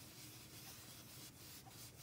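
Faint scratchy rubbing of an ink blending tool being worked round in small circles on cardstock, colouring in with ink.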